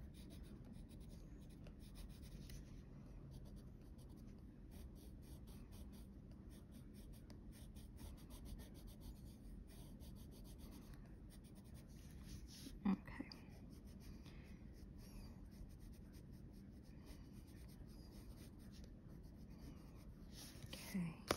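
Faber-Castell Polychromos coloured pencil scratching faintly on paper in many short, quick strokes. There is one brief louder blip about thirteen seconds in.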